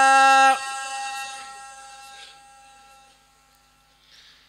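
A man chanting a khassida (Sufi religious poem in Arabic) into a microphone, holding one long steady note that breaks off about half a second in. The note rings on and fades away slowly over the next few seconds to near silence.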